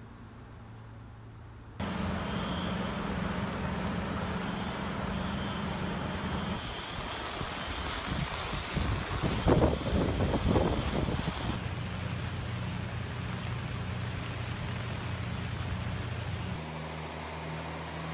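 Edited outdoor sound from several shots. It opens with a steady aircraft engine drone. About two seconds in, a loud steady rush of noise begins, with a low engine hum under it and a few seconds of wind buffeting the microphone around the middle. Near the end a heavy rescue truck's engine is running.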